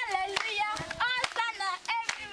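A group of children singing or chanting together with high voices while clapping their hands along, the claps coming every third of a second or so.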